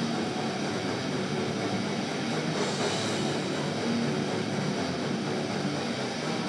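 Heavy metal band playing live, an instrumental passage of distorted electric guitars, bass and drums. Recorded from the crowd, it comes across as a dense, steady wall of sound.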